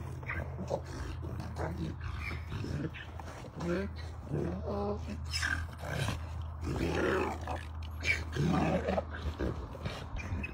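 A donkey making short throaty calls several times as it plays with a ball, over a steady low hum.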